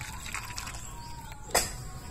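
Hot sugar syrup poured from an aluminium kadhai into a steel bowl: a faint pouring sound, then a single sharp knock about one and a half seconds in.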